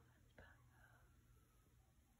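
Near silence: room tone, with one faint click about half a second in.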